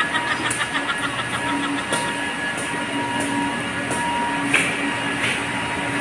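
Large electric pump motors of a reverse osmosis water system running steadily: a constant machine drone with a steady hum and a few faint ticks.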